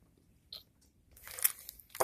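A faint click about half a second in, then about a second of scraping, crunching plastic noise with one louder scrape, from a plastic plug being worked against a power outlet too tight for it to fit, and the cords being handled.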